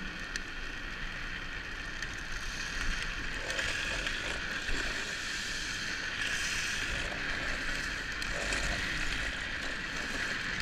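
Steady rush of wind and rolling wheel noise during a fast downhill ride, growing a little louder about three seconds in.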